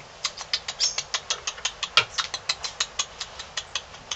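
A kinkajou smacking its mouth while it eats: a fast run of sharp, wet clicks, about seven a second, with one louder click about halfway through.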